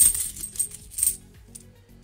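UK cupro-nickel 50p coins clinking and jingling against one another inside a cloth bag as a hand rummages through them to pick one out, loudest at the start and again about a second in. Soft background music runs underneath.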